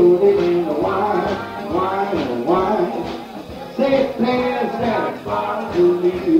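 A traditional New Orleans jazz band playing, its melody lines moving continuously with no pause.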